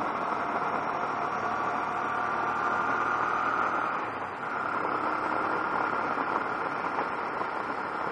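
Honda NT700V motorcycle's V-twin engine running at road speed, with wind rushing past the camera. The engine note climbs, dips briefly about halfway through, then carries on.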